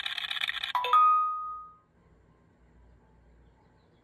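Launch CRP123X Elite OBD2 scanner playing a slot-machine sound effect during its VIN scan: a fast electronic reel-spinning rattle that stops with a chime under a second in, the chime ringing out for about a second, then near silence.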